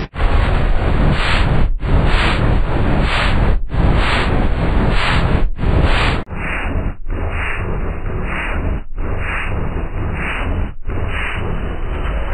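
A KFC logo's audio, heavily distorted by effects into a loud, noisy rush without clear notes. It repeats in chunks of about two seconds, each cut off by a brief dropout, and turns more muffled about halfway through.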